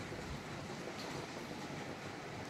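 Rain falling steadily, with wind: an even, unbroken hiss of drops.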